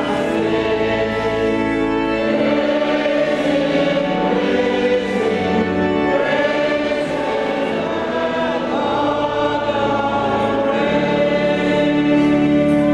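Church congregation singing a hymn together over sustained organ chords. The organ grows louder near the end.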